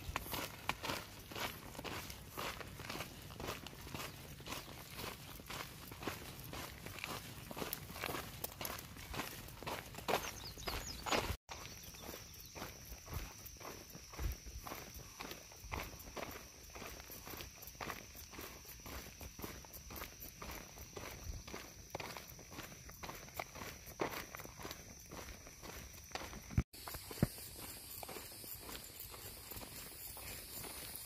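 A hiker's footsteps crunching on a gravel and dirt road at a steady walking pace. A faint steady high-pitched tone runs behind the steps through the middle of the stretch, and the steps break off abruptly twice where the recording jumps.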